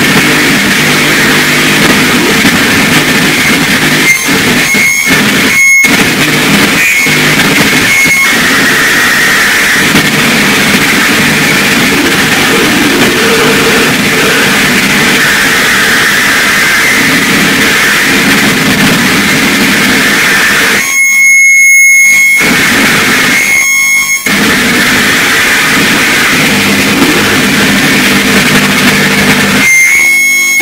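Harsh noise from live electronics: a dense, loud, continuous wall of distorted noise. It is broken by a few abrupt brief cut-outs between about four and eight seconds in, and again a little after twenty seconds.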